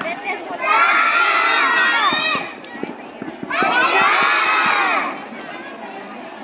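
A large group of young children shouting out together in chorus, twice, each shout lasting about a second and a half.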